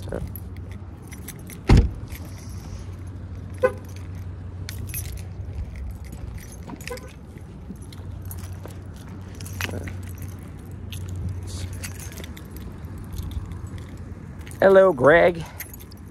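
Keys jingling on a neck lanyard in scattered small clicks over a steady low hum, with one heavy thump about two seconds in.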